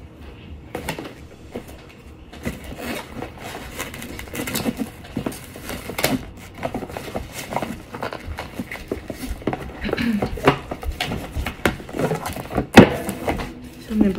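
Irregular clicks, taps and rustles of a tarot deck and its box being handled as a fresh deck is taken out, with one sharp knock near the end.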